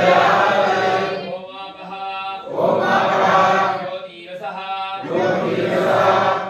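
Male voices chanting a Sanskrit mantra together during pranayama, in swells of many voices about every two and a half seconds, with a single clearer voice carrying the chant between them.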